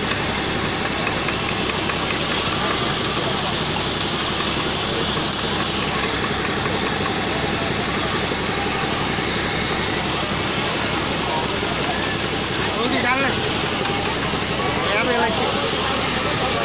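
Dense, steady din of a crowded food stall: many voices talking at once over a constant engine-like hum, with single voices standing out briefly about 13 and 15 seconds in.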